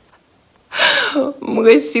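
A woman's voice: after a short pause, a brief breathy gasp, then she starts speaking in French.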